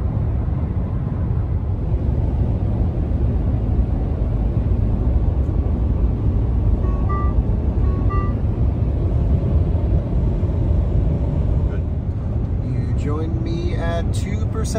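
Steady road and wind noise inside the cab of a Ford F-150 Lightning electric pickup cruising at about 80 mph. Two short two-note electronic chimes sound about seven and eight seconds in.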